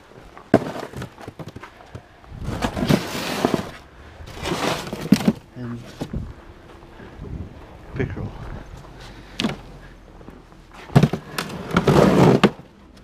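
Plastic fish tubs being handled, with scattered knocks and thuds and two longer scraping, rustling stretches a few seconds in.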